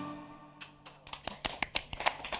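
The last note of a folk band's tune dies away, and after a brief lull scattered hand claps start about a second and a half in and grow denser as applause begins.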